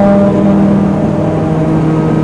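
Harmonium holding one steady chord, the backing drone of a Hindi devotional bhajan, with no voice over it.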